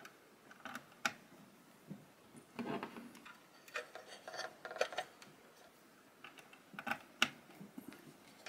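Faint handling noise of a 3.5 mm stereo audio cable being plugged in: rustles of the cable and a scattering of small sharp clicks from the jack plug and the sockets.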